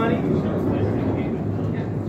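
A steady low background rumble, with the end of a man's spoken word right at the start.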